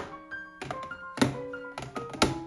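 Light background music with held notes, over a few sharp plastic knocks and clicks as makeup compacts are set down into clear plastic organizer trays in a drawer; the loudest knock comes a little over a second in.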